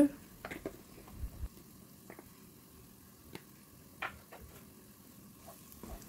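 Onion-tomato masala frying in oil in a nonstick pot: a faint sizzle with scattered small pops and ticks, and a soft low thump about a second in. Near the end a wooden spatula starts to stir it.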